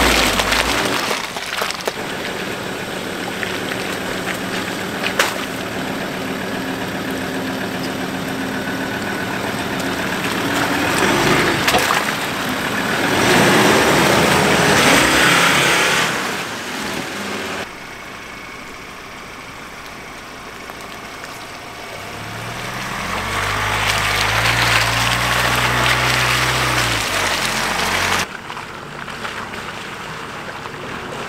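Four-wheel-drive vehicles working through muddy bog holes: a Suzuki Jimny's engine running steadily as it crawls through, then a loud rush of tyres churning mud and water as a mud-covered ute passes close by, then another vehicle's engine building as it approaches.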